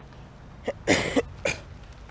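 A woman coughing: three quick coughs about a second in, the middle one loudest, from a scratchy, swollen sore throat.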